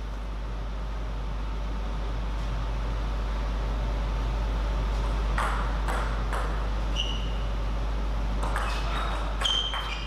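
Table tennis ball on table and bats: a few sharp clicks about halfway through, then short ringing pings and clicks coming faster near the end as a rally starts, over a steady hall background.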